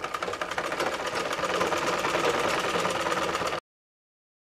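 Black domestic sewing machine stitching a seam through cotton fabric, its needle running in a rapid, even ticking rhythm. It cuts off suddenly about three and a half seconds in.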